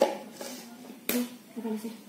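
Two sharp clicks about a second apart as a plastic mixing bowl and a spoon are handled, among short bits of talk.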